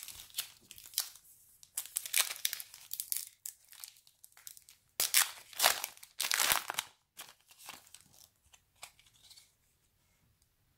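Trading-card pack wrapper being torn open and crinkled by hand, in irregular bouts of crackling, the loudest about two seconds and five to seven seconds in.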